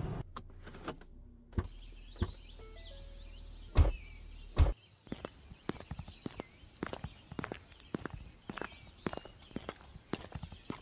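Two car doors slamming about a second apart, with a low hum cutting out at the second slam, then a run of footsteps walking with birds chirping faintly in the background.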